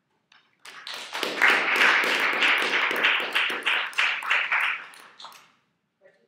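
Audience applauding for about five seconds, building up quickly and then tapering off.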